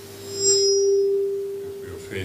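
Feedback ringing through a PA system's microphone: one steady pure tone that swells suddenly about half a second in, with a brief higher squeal over it, then slowly fades.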